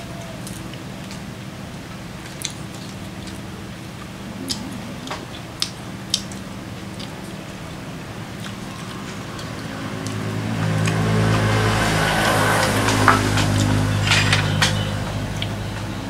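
Chopsticks clicking against porcelain rice bowls while eating, a few sharp clicks scattered over a steady low hum. About ten seconds in, a louder, deeper hum swells up, holds for several seconds and eases off near the end.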